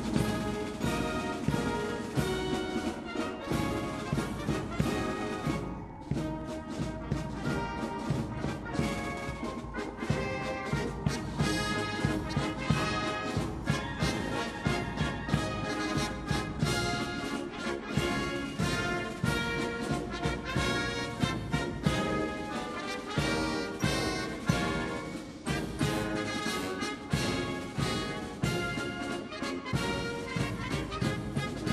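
Brass band music, a full ensemble playing many short, regularly repeated notes.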